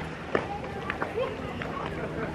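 Outdoor background of wind on the microphone and indistinct voices, with a couple of sharp clicks, about a third of a second and a second in.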